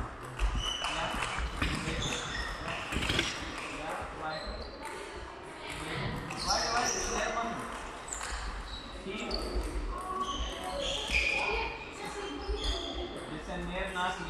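Table-tennis balls clicking repeatedly off bat and table in quick succession during a footwork drill, echoing in a large sports hall.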